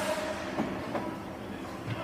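Ice hockey rink ambience: a steady noisy wash of skates on the ice in a big arena, with faint distant voices and a couple of faint clicks.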